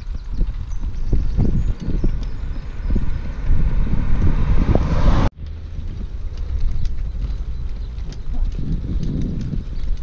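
Wind rumbling on the microphone of a camera carried on a moving bicycle, with scattered knocks. It cuts off suddenly about five seconds in and gives way to a quieter, steadier rumble.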